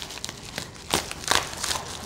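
A plastic poly mailer envelope crinkling as it is pulled open by hand, with a few sharp crackles, the loudest about a second in.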